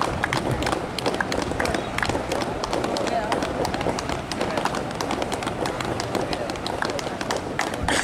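Indistinct chatter of several voices at an outdoor sports ground, with many short clicks and knocks throughout.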